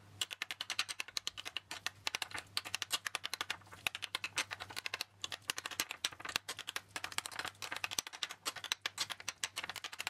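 Metal utensil clicking and scraping against a ceramic bowl in rapid, irregular taps, several a second, as soft avocado is mashed into guacamole.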